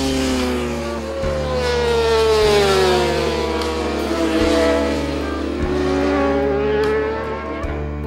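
Road-racing motorcycle engine. Its note falls over the first few seconds and climbs again from about halfway in, as the bike slows into a corner and accelerates out. Background music plays underneath.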